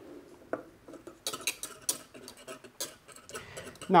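Wire whisk clinking and scraping against a metal saucepan of hot milk and cream, a handful of light, irregular metal clicks.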